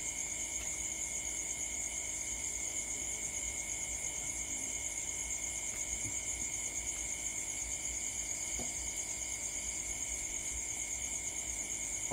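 A steady night chorus of crickets and other insects: a continuous high-pitched trill with a second, lower steady tone beneath it.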